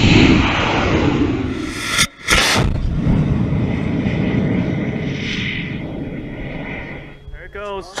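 Amateur high-power rocket motor firing at liftoff: a loud, steady rushing noise that breaks off briefly about two seconds in, then resumes and slowly fades as the rocket climbs.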